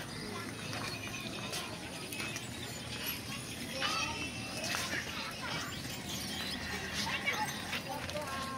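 Indistinct background chatter of voices and children, with a few short louder voice fragments around the middle and near the end, over a steady outdoor hum.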